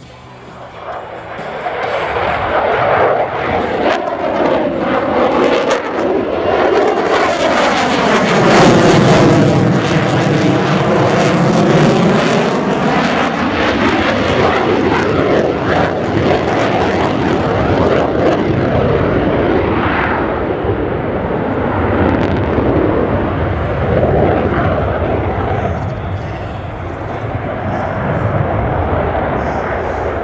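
Royal Danish Air Force F-16AM Fighting Falcon's Pratt & Whitney F100 turbofan: a loud jet pass that swells about a second in, with a sweeping, phasing rush as it goes by, then a steady heavy rumble as the fighter climbs away in afterburner.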